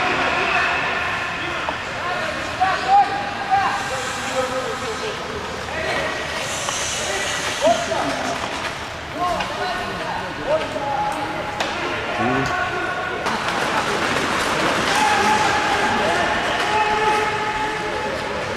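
Bandy players' voices shouting and calling out across a reverberant indoor ice arena, with some held calls, over the scrape of skates and occasional sharp clacks of sticks and ball.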